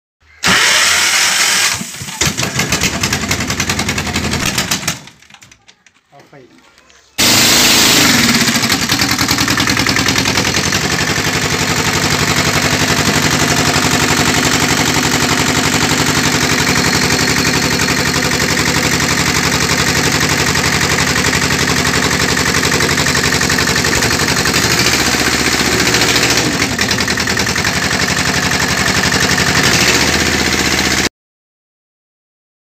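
Engine of a machine-driven firewood splitter running steadily. The sound cuts out for about two seconds near the start, then comes back and runs on evenly.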